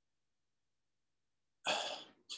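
Near silence, then near the end a man briefly clears his throat.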